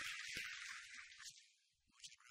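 Audience applauding, the applause dying away about a second and a half in.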